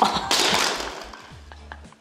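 A tall stacked tower of ice cream cones collapsing: a sudden loud crash and clatter at the start that dies away over about a second.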